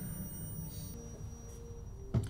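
Quiet, dark film score: a low rumble fading under held, steady notes that come in about a second in.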